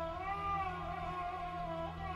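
Electronic keyboard music: a long held lead note that bends up and back down over a steady sustained chord.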